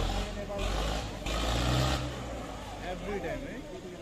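People talking over a motor vehicle's engine and road noise. The engine's low rumble is loudest from about one and a half to two seconds in.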